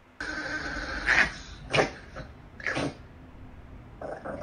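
A dog giving three short, sharp barks a little under a second apart, over a steady background hiss.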